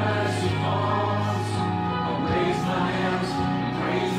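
A worship song: several voices singing together over instrumental accompaniment with sustained bass notes.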